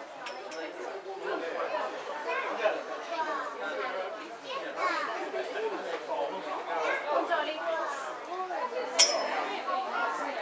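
Background chatter of several people talking over one another, with one short sharp click about nine seconds in.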